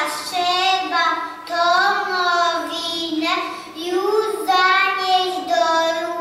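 Young children's voices singing a slow song, moving through long held notes.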